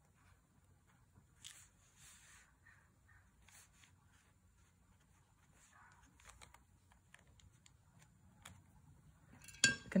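Quiet, with a few faint soft swishes of a paintbrush stroking watercolour onto paper.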